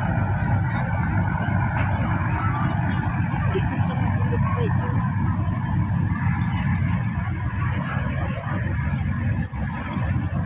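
Steady low rumble of harbour motor launches running past on the water, with people talking indistinctly in the background.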